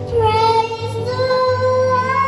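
A young girl singing into a microphone: one sung note that dips slightly in pitch, then a second held note.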